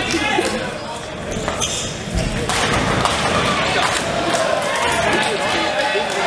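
Nine-pin bowling hall: heavy bowling balls thudding onto the lanes and rolling, with pins clattering, under steady voices of players and spectators. A low thump comes about two seconds in, and the sound grows busier and louder after it.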